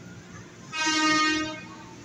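Electric commuter train's horn giving one short toot of under a second, steady in pitch.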